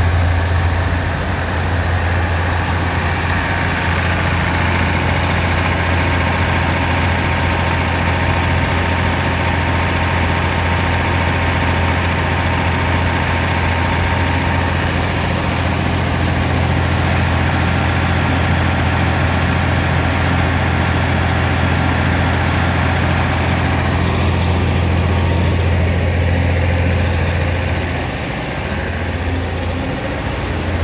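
Farm machinery running with a steady, loud low drone and a constant hum over it; it eases off slightly near the end.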